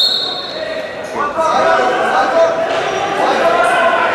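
People shouting in a large hall, the voices growing louder about a second in.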